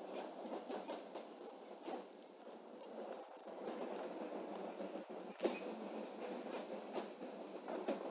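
Scattered computer keyboard and mouse clicks over a steady hiss of room and microphone noise, with one sharper click about five and a half seconds in.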